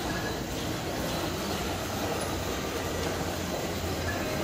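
THK wheeled transport robot driving across a tiled floor: a steady low rumble from its wheels and drive motors, over the room's background noise.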